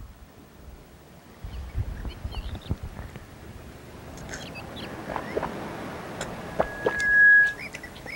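Handling clicks and rustling, with a few short high chirps around the middle, then a single loud, steady electronic beep lasting nearly a second near the end.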